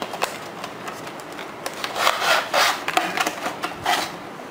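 Cardboard box and plastic packaging tray being handled and slid apart, rubbing and scraping in irregular bursts, loudest about halfway through.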